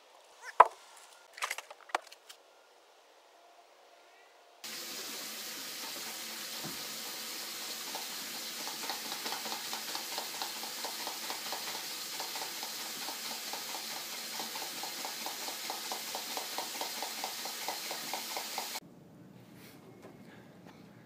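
A few sharp clacks as a metal folding chair is picked up. Then a steady hiss with a quick, regular liquid pumping of a hand-plunger milk frother working milk into foam in a mug, which stops suddenly near the end.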